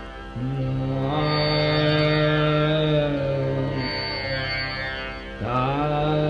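Dhrupad vocal alap in Raga Adana: a male voice holds long steady notes and slides slowly between them, over a steady drone. A fresh note glides in about half a second in and another near the end, with no drumming.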